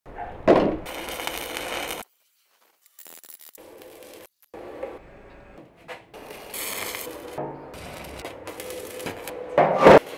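A quick-cut series of metalworking sounds from building a steel brazier: a loud hit about half a second in, stretches of hiss and scraping broken by abrupt cuts and a short silence, and another loud hit just before the end.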